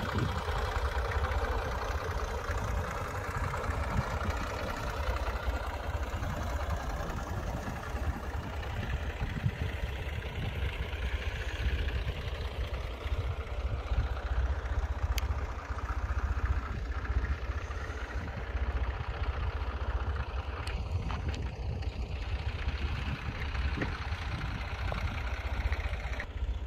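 Small farm tractor's engine running steadily, a low rumble with no sharp changes.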